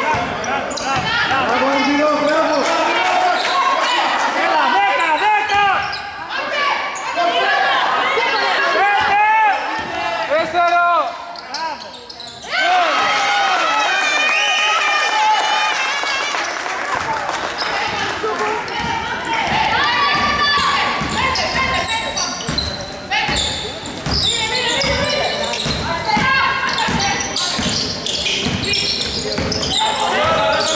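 Basketball bouncing repeatedly on a hardwood gym floor during live play, in a reverberant sports hall, with voices calling out.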